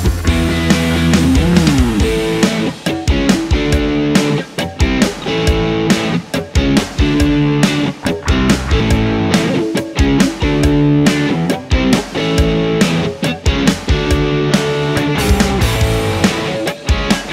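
Overdriven electric guitar riffs on Fender Telecaster and Esquire guitars through a tube amplifier: rhythmic chords cut off in many short, abrupt stops, with a pitch slide about a second and a half in.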